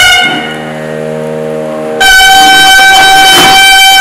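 Nadaswaram: a melodic phrase ends at the start, a quieter low steady drone carries on alone for under two seconds, then the nadaswaram comes in loud on one long held high note.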